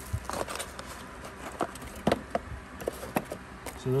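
Bubble wrap crinkling and rustling as a part is unwrapped by hand, in scattered light crackles and clicks.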